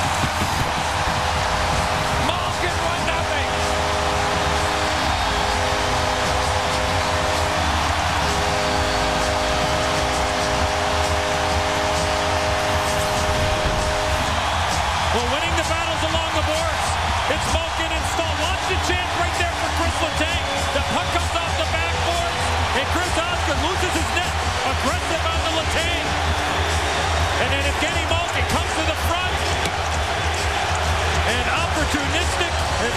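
Arena goal horn sounding in long, steady blasts for about the first fourteen seconds over a loud home crowd cheering a goal. Music then plays over the continuing crowd noise.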